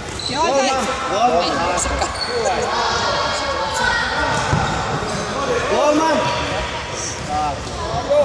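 Futsal ball kicked and bouncing on a hardwood sports-hall floor during play, with players' and spectators' voices and calls echoing in the hall.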